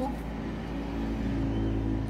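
A steady low motor hum with several held tones, like an engine running, which stops just after the end.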